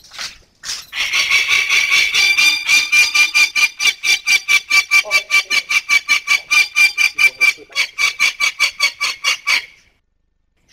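Young peregrine falcon calling in a rapid, steady run of harsh, loud cries, about four to five a second, starting about a second in and stopping just before the end.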